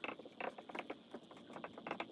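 Dry-erase marker writing on a whiteboard: an irregular run of short squeaks and scratches as the letters are drawn.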